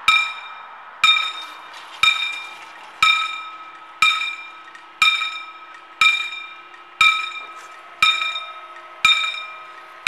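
Loud electromechanical level-crossing warning bell striking once a second, each stroke ringing out and fading before the next, ten strokes in all. A faint low steady hum runs underneath from about a second in.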